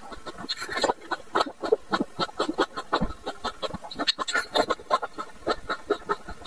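Close-miked chewing of green grapes bitten off a skewer: a quick, irregular run of wet clicks and squelches from the mouth.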